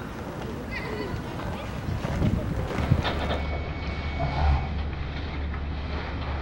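Outdoor city ambience: a low, steady traffic rumble with faint voices and a few short high chirps. The background changes about three seconds in.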